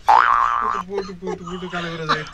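A comic sound effect that starts suddenly with a quick upward swoop and holds its pitch for under a second, then gives way to a lower drawn-out tone lasting about a second and a half.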